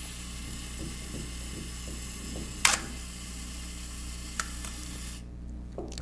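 Canon FT QL's mechanical self-timer running down with a steady whir, after the shutter button has been pressed. One sharp click comes a bit under three seconds in and two lighter ticks follow; the whir stops near the end as the countdown runs out.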